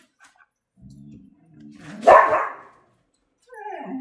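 Pet dog giving a few quiet low sounds, then one loud bark about two seconds in: the dog wanting to be let out.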